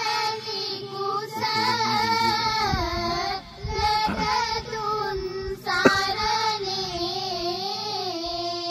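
A high voice singing a slow devotional melody in long held notes with a wavering pitch, broken by short pauses between phrases. A single sharp knock sounds about six seconds in.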